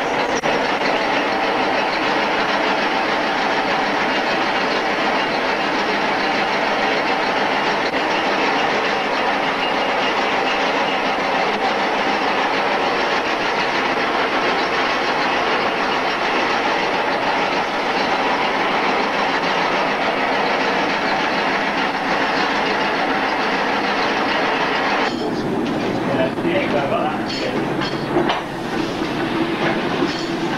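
Belt-driven overhead line shafting and flat belts running, with a steady mechanical clatter. The sound changes about 25 seconds in.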